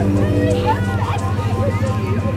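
A motor running with a steady, pulsing low drone, under several people's voices chattering.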